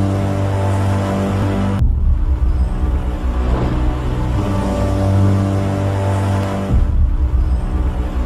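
Dark, ominous background music with sustained low, droning notes, the harmony shifting about two seconds in and again near seven seconds.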